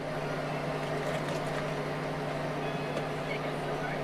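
A steady low mechanical hum at one fixed pitch, with a faint even hiss, running unchanged.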